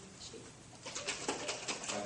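A lidded glass jar of lemon juice, oil and green-dyed egg yolk being shaken by hand, the liquid sloshing in quick strokes, several a second, that start about a second in. The egg yolk is emulsifying the oil and acid.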